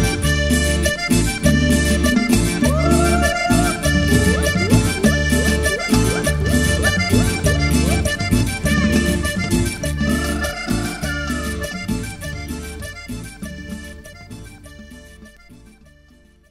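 Instrumental ending of a cumbia: accordion playing the melody over a steady bass and percussion beat. The music fades out over the last several seconds.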